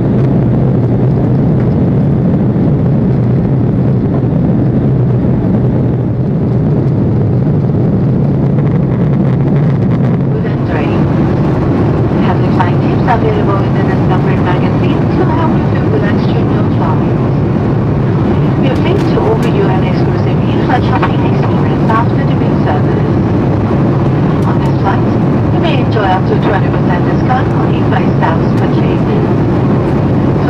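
Steady in-flight cabin drone of an Airbus A340-300, the low hum of its four engines and the airflow. About ten seconds in, a cabin public-address announcement begins over it and runs on.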